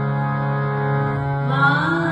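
Sikh shabad kirtan: steady held instrumental notes, with a woman's singing voice sliding upward into a phrase about one and a half seconds in.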